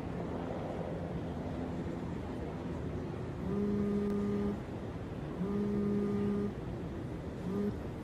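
A low steady hum of a sci-fi portal closing sound effect, then a phone ringing: two rings of about a second each, a second apart, and a short third ring cut off near the end.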